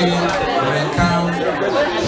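A man's voice amplified through a handheld microphone, with keyboard music playing underneath.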